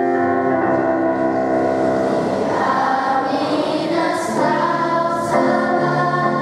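A girls' school choir singing, accompanied by an electronic keyboard, with long held notes and a steady low bass line.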